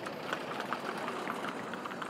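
An oncoming Land Rover's engine running as it nears, under a steady light clicking from small hooves and carriage fittings on the road.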